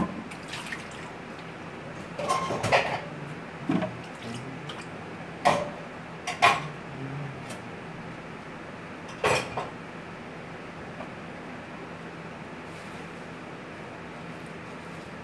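Steady low hum of a large indoor hall, broken by a scattering of short sharp knocks and claps. The loudest come about five and a half, six and a half and nine seconds in.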